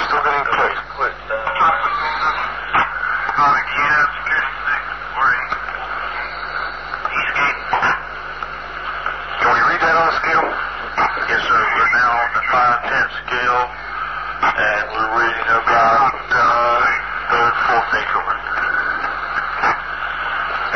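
Men talking on a muffled, hissy old tape recording, with a steady low hum under the voices.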